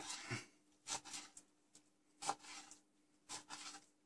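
Kitchen knife slicing through grilled pork cheek on a cutting board: a few faint separate cuts, roughly one a second.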